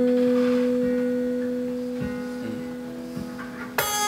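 Acoustic guitar note left ringing and slowly fading, clear and pure like a tuning fork, then a new chord strummed near the end.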